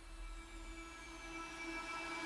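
Quiet background music fading in: a soft sustained chord of held tones with a faint high tone slowly falling, growing steadily louder as a song's intro builds.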